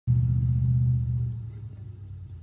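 A loud, low, steady rumble that starts abruptly and fades from about a second in.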